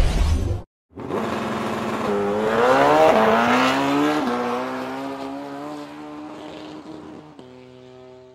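A loud, low music sting cuts off under a second in. After a brief silence, a vehicle engine accelerates, its pitch rising and then dropping twice as if shifting gears. It then holds a steady note that fades away.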